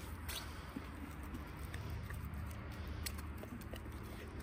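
White-tailed deer eating apple pieces from a hand-held stainless steel bowl: faint, scattered light clicks of its muzzle and chewing against the bowl, over a low steady rumble.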